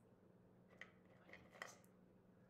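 Near silence: room tone with a faint steady hum and a few faint clicks in the second half.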